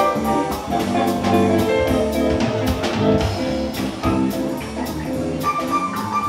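A live jazz band playing: electric guitar and a Yamaha Motif XF8 synthesizer keyboard over a drum kit, with a steady beat.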